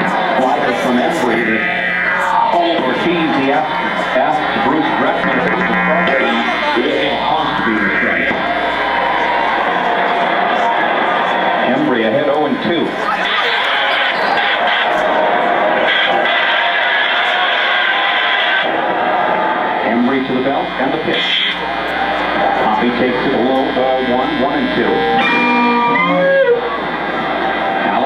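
Two electric guitars played as improvised noise through distortion and effects pedals: a dense, loud wash with sweeping slides in pitch and a run of quick glides near the end. A radio voice runs underneath.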